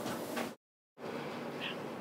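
Faint, steady background hiss of room tone between narrated lines. It drops out to dead silence for about half a second a little after the start, then resumes unchanged.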